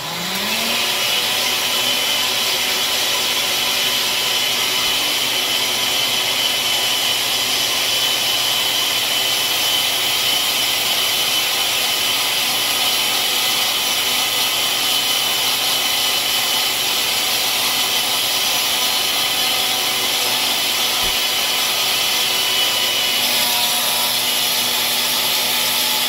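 Countertop blender blending a smoothie, run for a second time. The motor's pitch rises as it spins up at the start, then it runs loud and steady and cuts off at the end.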